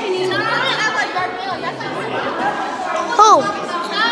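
Overlapping chatter of several voices, children among them, in a busy room, with one loud high-pitched call or shout rising and falling in pitch about three seconds in.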